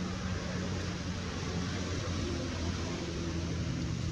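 Steady background noise: an even hiss with a low, constant hum underneath, and no animal calls standing out.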